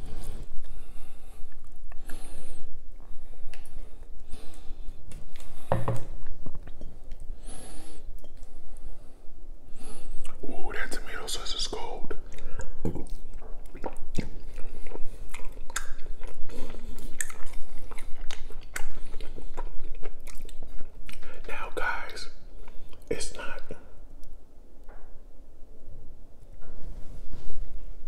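Close-miked chewing and mouth smacking of soft shrimp and lobster ravioli in tomato sauce, with many small wet clicks and smacks.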